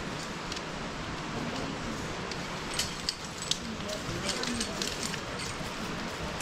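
Steady outdoor background hiss with faint, distant voices and a scatter of light clicks and rustles in the middle.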